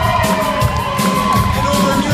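Live rock band playing: electric guitars and bass over a steady drum beat, with a lead line whose notes bend up and down in pitch.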